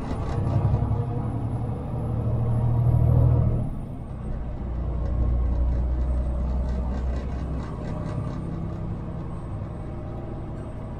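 Semi truck's diesel engine and tyre noise at highway speed, heard inside the cab. The engine drone swells to its loudest about three seconds in, drops away just after, and settles into a lower steady hum.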